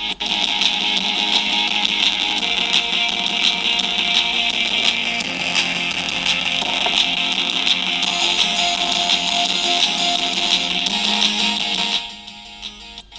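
Guitar music played loud through a pair of small, cheap full-range speakers driven by a 3 W + 3 W Bluetooth amplifier board. The sound is thin and bright, with hardly any bass.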